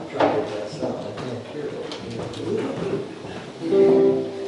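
Indistinct low talk and stirring among the musicians, then near the end a stringed instrument strikes a loud, ringing note as the band begins to play.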